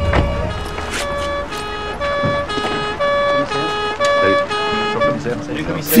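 Two-tone emergency-vehicle siren, alternating between a higher and a lower note, each held about half a second, over a music bed. It is a sound effect.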